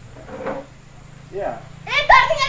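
Two faint, short voice-like calls about a second apart, in a lull between louder talking, over a low steady hum.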